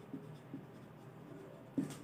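Faint rubbing of a felt-tip marker on a whiteboard as a word is written by hand.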